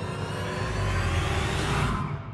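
Swelling sound effect of a film-countdown intro: a rush of noise over a deep rumble that builds steadily and is loudest near the end.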